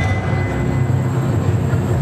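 Dance performance soundtrack over the hall's loudspeakers: a low, rumbling, noisy passage that opens with a sharp hit and a brief high ringing tone.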